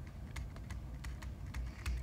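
Pen or stylus tapping and scratching on a writing tablet as a word is hand-written: faint, irregular light clicks.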